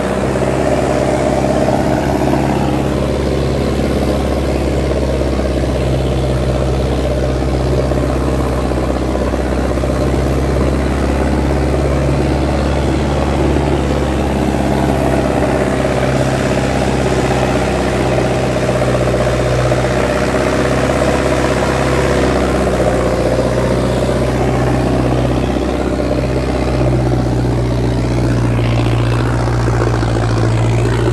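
Sonalika DI 750 tractor's diesel engine running steadily under heavy load, holding an even pitch as it pulls a disc harrow through ploughed soil.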